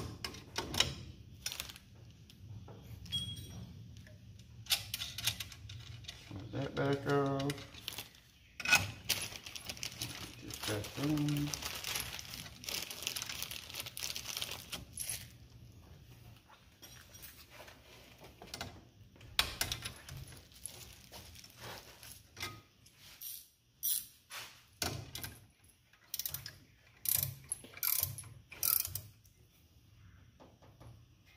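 Hand wrench work on the steel bracket for the brake proportioning valve at the master cylinder: a string of irregular metal clicks, clinks and taps as the bolt is turned and the bracket fitted.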